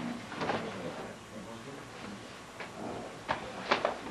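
Indistinct chatter of several people in a practice room, with a few sharp smacks. The loudest are a quick pair just before the end, typical of partners practising hand-to-arm blocking drills.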